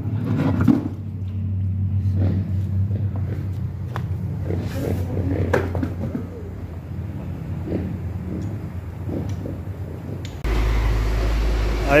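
A steady low mechanical hum with scattered clinks and knocks of tyre work as a wheel is handled on a shop floor. About ten seconds in, the sound cuts to a louder, deeper steady rumble.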